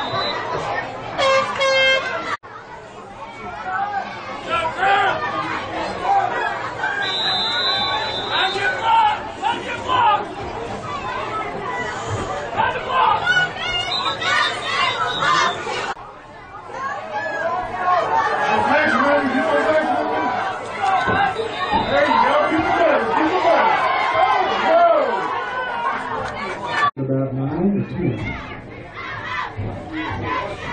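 Crowd of football spectators talking over one another: a steady babble of many voices, with no single voice standing out. The sound breaks off abruptly three times.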